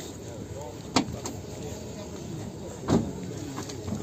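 Low outdoor background with faint voices, broken by a sharp click about a second in and a louder knock just before three seconds.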